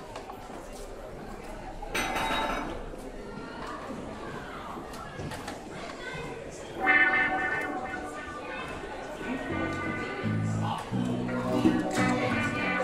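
Low room murmur with a short clatter about two seconds in, then about seven seconds in a live band of electric guitar and keyboard begins playing: sustained notes, with low bass notes entering a few seconds later.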